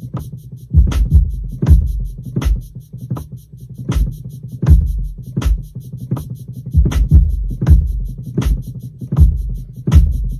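Programmed drum-machine loop playing back at 80 BPM: a low kick and sharp hits land about every three-quarters of a second, with a fast shaker ticking over the top as a shaker part is recorded from the keyboard.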